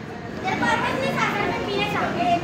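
Children's voices talking and chattering, starting about half a second in, over a background of other people talking.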